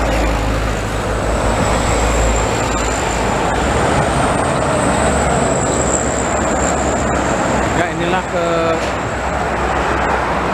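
Multi-lane highway traffic, cars and trucks passing close by in a steady roar of engines and tyres, with a deep rumble in the first couple of seconds.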